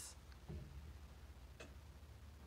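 Near silence: room tone with a faint low hum and a soft click about a second and a half in.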